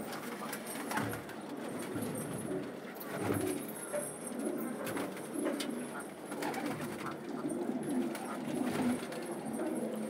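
Several domestic pigeons cooing in a loft, their low calls overlapping and repeating throughout.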